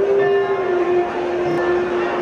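A man singing one long held note in a Baul devotional song, the pitch dipping slightly about a second in.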